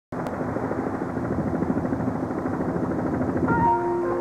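Helicopter rotor beating in a fast, even rhythm. Music comes in with held tones about half a second before the end.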